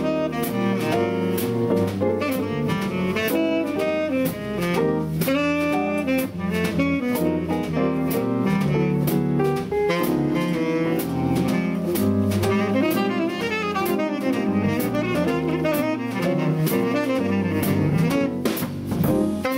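Tenor saxophone playing a swing jazz solo over a rhythm section of piano, double bass and drums, with the cymbal keeping a steady, even beat.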